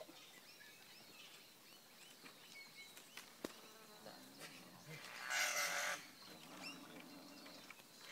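Birds calling in the tree canopy, with a sharp click about three and a half seconds in and a loud, harsh rasping burst lasting about a second around five seconds in.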